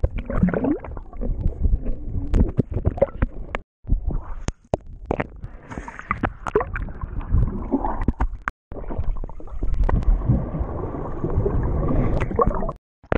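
Pool water sloshing and gurgling, muffled as heard by a camera at and below the surface, with many sharp knocks and a person's splash into the water. The sound cuts out briefly twice.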